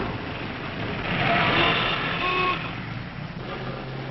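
Street traffic: motor vehicles running, with a few short horn toots around the middle.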